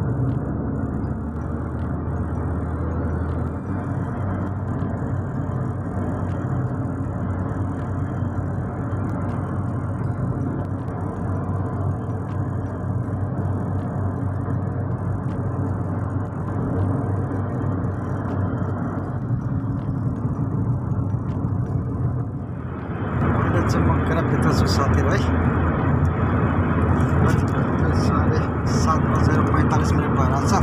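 Steady road and engine noise heard inside a car cabin at highway speed. About 23 seconds in it turns louder and brighter.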